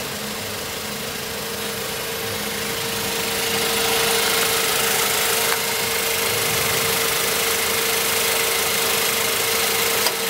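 Mazda 5's DOHC 16-valve four-cylinder petrol engine idling steadily with the bonnet open, a constant whine running through it. It grows louder about three to four seconds in and then holds steady.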